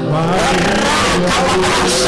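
Church worship music with steady held keyboard-like chords, a new higher note joining about one and a half seconds in, and a man's voice over the microphone rising and falling above it.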